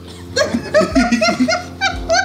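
Several people laughing together in a quick run of short bursts, starting about half a second in.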